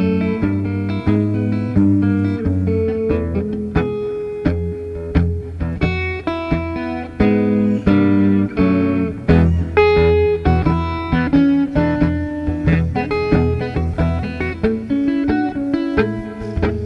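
Blues guitar playing an instrumental passage: quick picked single-note runs and chords over steady low bass notes, with no singing.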